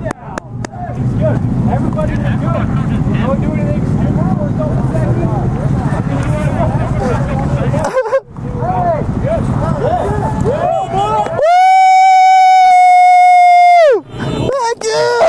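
A group of motorcycles idling together under a crowd of voices, cut off sharply about eight seconds in. Near the end comes a loud, steady, single-pitched electronic beep lasting about two and a half seconds, with all other sound dropped out beneath it.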